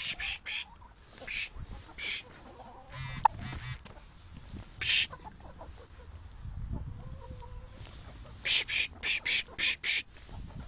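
A person making short, hissing "psh" calls to urge on a herding dog. They come singly at first, then in a quick run of about six near the end. Chickens cluck faintly underneath.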